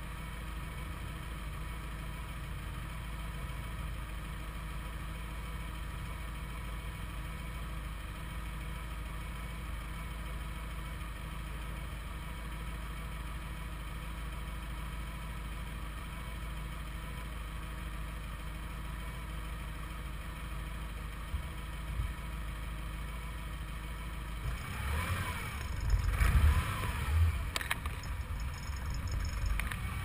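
Car engines running at a distance, a steady low drone. From about 25 seconds in, wind buffets the microphone with loud, uneven low rumbling, and an engine note rises and falls under it.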